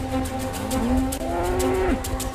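A cow mooing once: a long call that rises in pitch, holds, then drops off sharply at the end, over background music.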